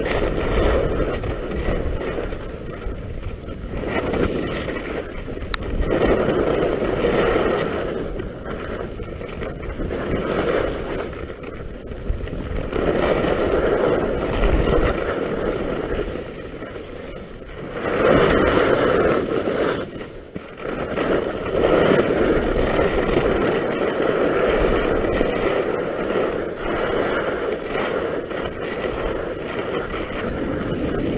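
Skis scraping and carving over packed snow on a downhill run, the hiss swelling with each turn every two to four seconds.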